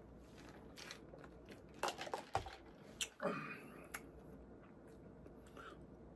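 Faint chewing of a mouthful of chicken sandwich, with a few short, sparse mouth clicks and smacks.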